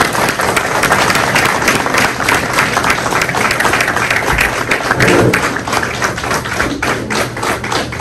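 An audience applauding: many people clapping together, thinning out toward the end.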